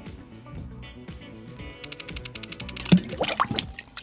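Fujifilm X-T4 firing a high-speed burst with its electronic shutter: a rapid run of shutter clicks lasting about a second. A GoPro camera then hits a glass tank of water near the end with a sudden splash.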